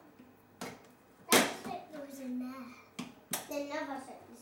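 A young child's wordless voice, high and wavering, broken by sharp knocks. The loudest knock comes about a third of the way in, and a smaller one near the end.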